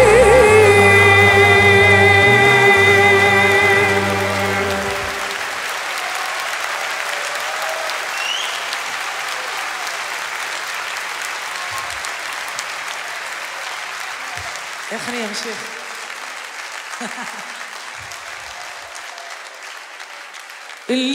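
A woman's long sung note with vibrato over the orchestra's held chord, which stops about four to five seconds in. Audience applause follows, with a few shouts, slowly fading.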